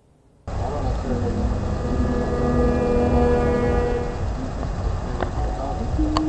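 Near silence, then about half a second in the sound cuts in loudly: outdoor street ambience with a low rumble on a handheld camera's microphone and a steady hum holding one pitch for about three seconds.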